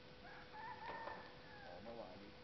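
A rooster crowing faintly: one crow of about a second that falls away at its end.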